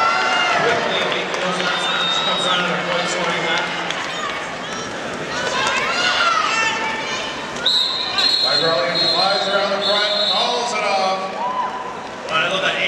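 Voices and shouting from the crowd and skaters echo in a large hall. About two-thirds of the way through, a referee's whistle gives several short, shrill blasts, the signal that ends the jam.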